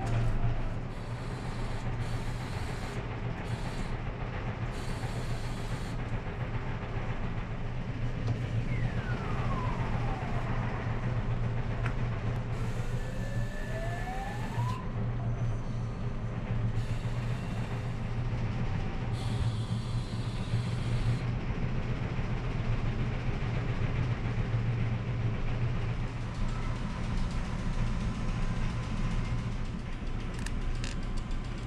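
A crane game machine's electronic sound effects over a steady low hum: a falling tone about nine seconds in, then a rising tone a few seconds later. The low hum underneath is the ferry's engines.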